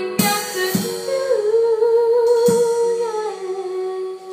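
A female singer holds one long sung note with vibrato, stepping down in pitch near the end, over a live band's backing with a few sharp drum hits.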